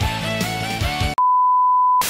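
Background music with a beat for about a second, cut off suddenly by a steady, pure, high-pitched beep tone that holds to the end, an edited-in sound effect like a TV test tone.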